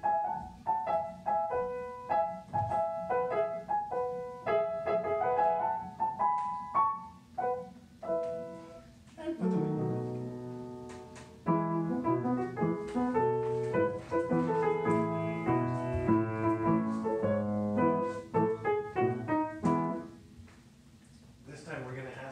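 Upright piano playing quick separate notes high on the keyboard, then about nine seconds in moving down to lower, fuller notes, which fade away near the end.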